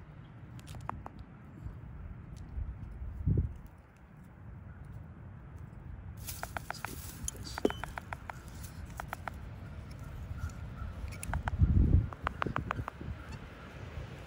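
Handling sounds as pliers work an aluminium lock-on leg band on a great horned owl nestling's leg: low rustling with a couple of soft bumps, and from about halfway through, short runs of quick sharp clicks.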